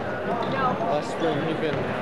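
Gym crowd chatter over a basketball being bounced on a hardwood floor by a free-throw shooter at the line.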